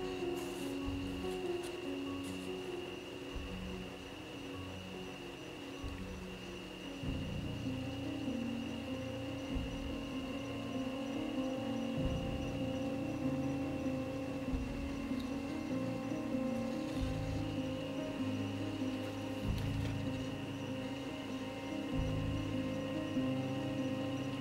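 Background music: a solo acoustic guitar piece, with notes changing every second or two.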